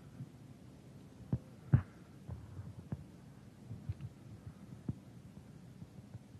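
Several soft, low thuds at uneven intervals over a faint steady hum, the loudest about two seconds in.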